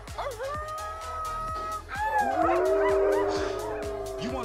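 Voice-acted cartoon hellhounds howling over background music: a long high howl, then a lower, longer howl about two seconds in.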